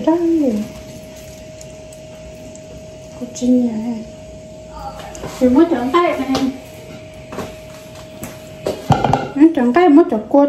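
Voices speaking in short bursts in a small room, over a faint steady high hum that stops near the end.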